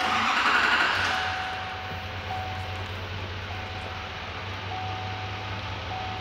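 2019 Chevrolet Silverado 2500's 6.6-litre Duramax L5P diesel V8 starting at once, loudest in the first second, then settling to a steady idle, heard from inside the cab. A steady tone sounds on and off throughout.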